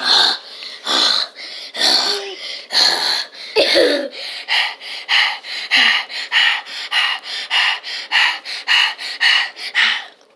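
A person panting hard close to the microphone, out of breath from burpees: deep breaths about one a second at first, then quicker, about three a second.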